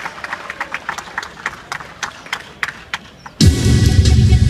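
Scattered hand-clapping from a small audience, then about three and a half seconds in, loud music with a heavy bass beat starts abruptly over a PA speaker.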